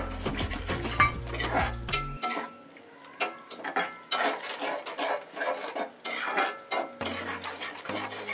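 A steel spoon stirring sauce in a metal kadhai as cornflour slurry is mixed in, with repeated scrapes and clinks of metal on metal.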